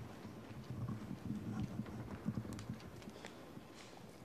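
Footsteps of dress shoes on cobblestones, irregular steps, fading toward the end.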